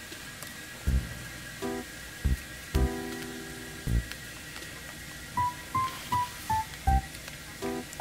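Background music added in the edit: sparse plucked and keyboard notes over soft low beats, with a short run of five high notes stepping down in pitch a little past halfway.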